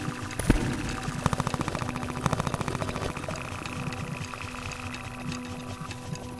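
Experimental electroacoustic ambient music with steady droning tones. A sharp thump comes about half a second in, followed by a fast, machine-like rattle of even pulses that fades out after about two seconds.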